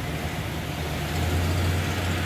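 A steady low engine rumble from motor-vehicle traffic.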